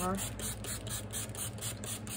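A small spray bottle being pumped rapidly onto a paper towel, quick spritzes of water about four or five a second, over the steady hum of an air conditioner.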